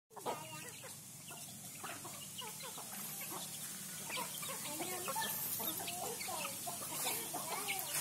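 Chickens clucking: many short calls that grow busier from about halfway through.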